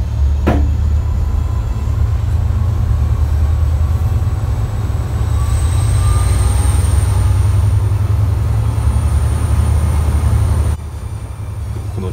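Diesel locomotive throttling up as the train departs, heard from the front vestibule of the leading carriage: a powerful, deep engine rumble with the blower that feeds air into the engine, and a thin high whine rising slowly in pitch. A single knock about half a second in, and the sound drops suddenly near the end.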